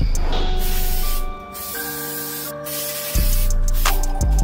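Aerosol can of spray adhesive hissing in a few long bursts, with short breaks between them.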